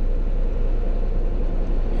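Steady low road-and-engine rumble inside the cab of a semi-truck driving at highway speed.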